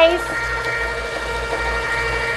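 Electric bucket-style ice cream maker's motor running steadily while it churns in ice, a constant hum with a low rumble underneath.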